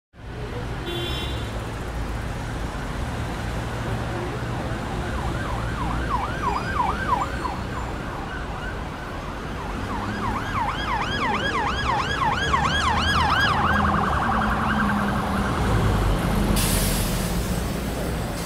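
Emergency vehicle siren in a fast yelp, its pitch rising and falling about four times a second, heard in two spells over a steady traffic rumble. A short hiss comes near the end.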